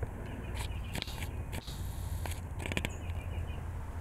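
A low steady hum with a few scattered light clicks and rustles, like handling noise; the router spindle is not running.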